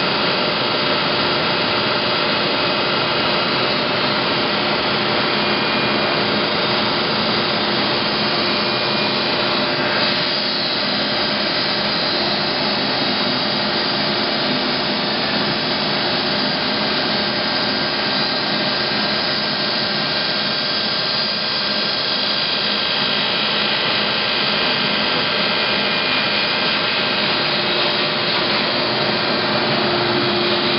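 Okuma GP-44N CNC cylindrical grinder running under power: a steady mechanical whir with several held tones, unchanging throughout.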